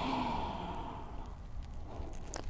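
A slow, breathy exhale that fades away over about the first second, taken on a cued yoga exhalation as the body rounds forward.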